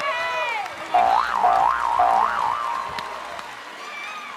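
A comedic boing-style sound effect: a wobbling tone that swings up and down about three times and then holds, coming after a short falling tone at the start.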